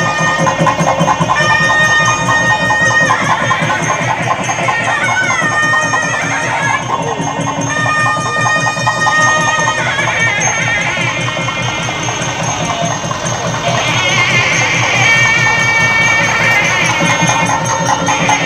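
Music: a reedy wind melody of long held notes and sliding, ornamented phrases over fast, steady drumming.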